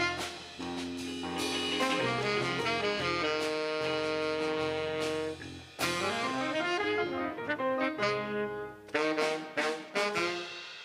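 Small jazz combo of saxophone, piano and drum kit playing, with long held notes in the middle and a run of sharp accented hits near the end.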